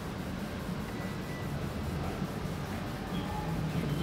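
Faint background music over a steady hum of room noise.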